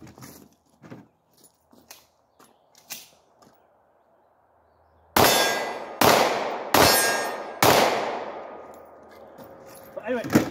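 Four pistol shots about three-quarters of a second apart, each followed by a long ringing decay. Light clicks of the gun being handled come before them.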